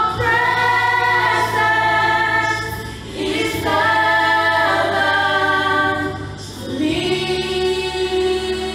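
A worship team of women's and a man's voices singing a gospel worship song in harmony through microphones. They hold long notes in three phrases, with short breaths about three and six and a half seconds in, over a steady low accompaniment.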